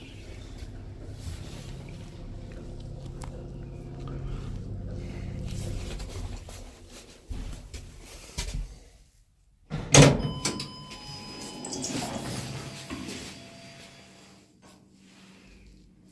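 ZREMB Osiedlówka passenger lift in motion: a steady low motor hum for about eight seconds, then clicks as the car slows and stops. After a brief hush comes a loud clunk about ten seconds in, followed by a few seconds of thin whining as the doors open.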